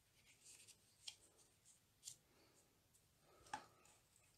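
Near silence with faint handling sounds: a few soft taps and light paper scuffs as a sheet of card stock is turned and set down on a stamping platform, the last tap near the end the loudest.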